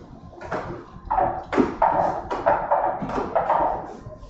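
Small plastic lottery balls tumbling and knocking inside a clear plastic draw drum as it is turned, about three hollow clacks a second.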